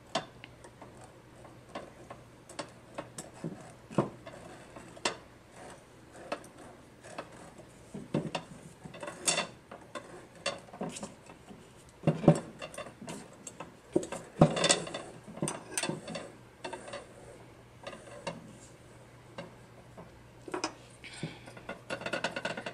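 Scattered, irregular light clicks and short rustles as a wooden tapestry needle is worked over and under the warp threads of a wooden frame loom and yarn is drawn through.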